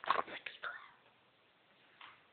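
Brief whispering close to the microphone in the first second, then quiet.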